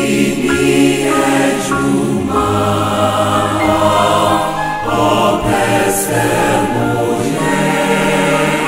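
Choir singing a Christian hymn in Twi in several-part harmony, with long held notes moving together from phrase to phrase.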